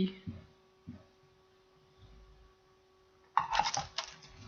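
Faint steady electrical hum with a few soft clicks, then near the end a short burst of crinkly rustling as a foil trading-card pack is handled and torn open.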